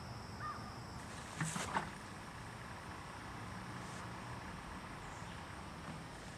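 Quiet outdoor backyard ambience: a faint steady insect buzz and small bird chirps, with a couple of brief harsh calls about a second and a half in.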